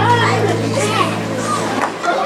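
A keyboard chord held steady and fading out near the end, with children's voices chattering over it.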